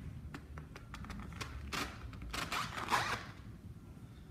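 Top assembly of a Maxon 5000 series safety shutoff valve being turned by hand on its valve body: light clicks and several short scraping rasps, the loudest a little before three seconds in.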